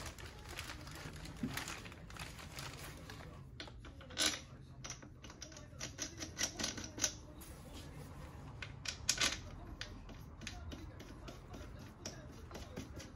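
Clear plastic packaging crinkling and crackling around a metal part being handled, in irregular quick clicks, busiest from about four to nine and a half seconds in.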